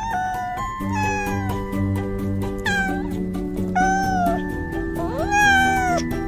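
A domestic cat meowing close up, about five drawn-out meows in a row. The last one rises in pitch and is the longest and loudest. Background music plays throughout.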